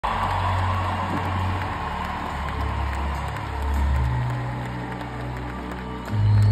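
Music through an arena sound system: deep, sustained bass notes that change pitch every second or two, under a hazy wash of crowd noise.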